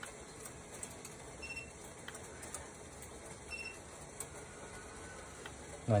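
Water heating in a pot on an electric stove burner, just short of the boil: a faint steady hiss with scattered small ticks.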